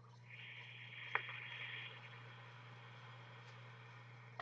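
Faint, steady airy hiss of a long draw on a Big Dripper RDTA vape atomizer, lasting about three and a half seconds, with a single click about a second in.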